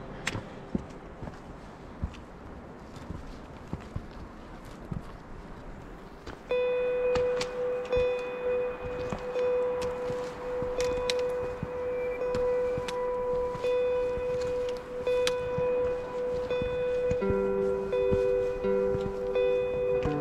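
Footsteps and trekking-pole clicks on a rocky mountain path, with some outdoor noise. About six seconds in, louder background music starts: a long held note with repeating chime-like notes above it.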